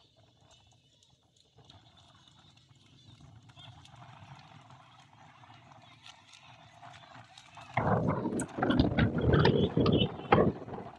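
Wind buffeting the microphone in loud, irregular gusts that start about eight seconds in, over faint background sound before that.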